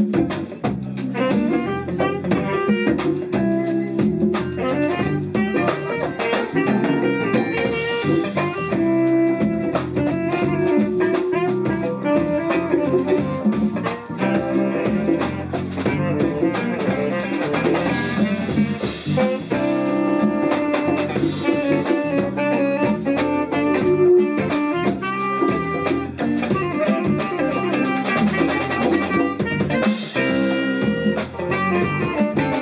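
Live jazz jam: a saxophone plays the melody over drum kit and electric bass, with guitar in the band.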